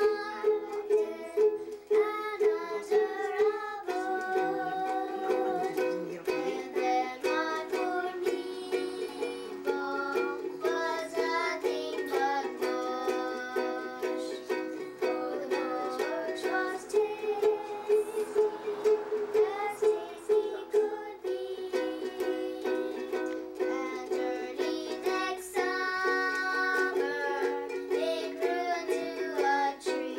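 Ukulele strummed in a steady rhythm of chords, with girls' voices singing a song along with it.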